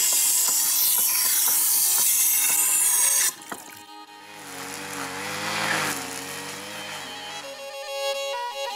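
A metal blade is pressed against a spinning grinding wheel, giving a loud, harsh grinding hiss that cuts off suddenly about three seconds in. After a short lull a small engine, a brush cutter, runs steadily with a slightly wavering pitch.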